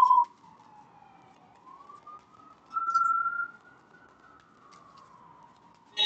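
A siren wailing: one tone that slides down, rises to a peak about three seconds in, then falls again.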